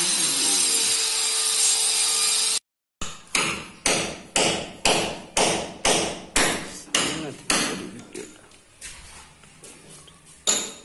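A handheld electric marble cutter running for the first couple of seconds, then cut off. After that comes a steady series of sharp knocks, about two a second, each ringing briefly, growing weaker near the end.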